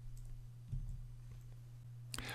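Faint room tone in a pause of a recorded voice, with a steady low hum and a few soft clicks.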